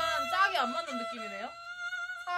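A man speaking, over a steady held tone that runs on beneath the voice.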